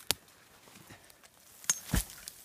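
A steel nursery spade prying and lifting a root clump out of dry, dusty soil: a sharp knock just after the start and two more near the end, with faint crumbling of dirt between.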